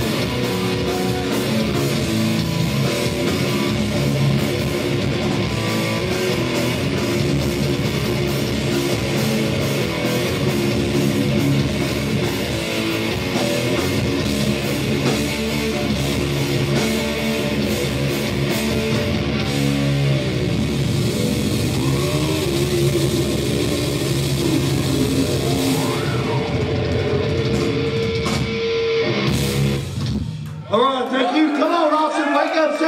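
A live heavy metal/hardcore band playing loud: distorted electric guitar, electric bass and a drum kit. Near the end a long note is held before the song stops.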